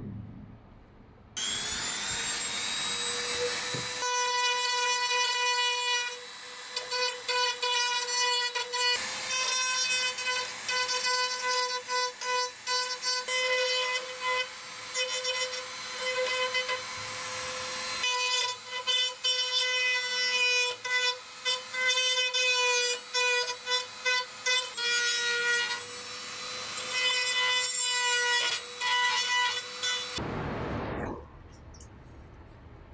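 Handheld rotary tool with a small bit grinding away moulded plastic posts. It spins up with a rising whine about a second in, then runs at a steady high pitch, the level dipping again and again as the bit bites into the plastic.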